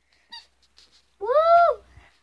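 A girl's single high-pitched "woo!" exclamation about a second in, rising and then falling in pitch.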